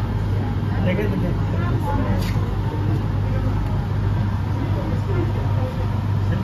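Scattered, indistinct voices of nearby people over a steady low hum of outdoor city noise.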